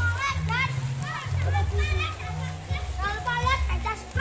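Several children's voices calling out and shouting, over a low bass line of music playing in the background.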